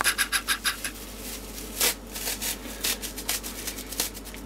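A disposable nappy's fabric and absorbent padding scratching and rubbing as hands pull it apart. There is a quick run of about eight to ten scratchy strokes in the first second, a louder single scrape about two seconds in, then scattered fainter rustles.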